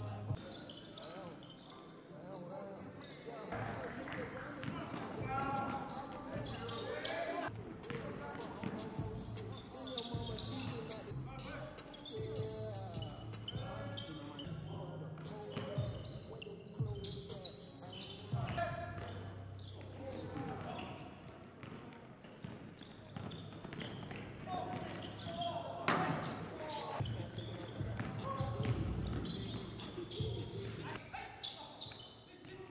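Basketballs bouncing on a hardwood gym floor during a scrimmage, with sharp dribbles and impacts scattered throughout, under players' indistinct voices calling out.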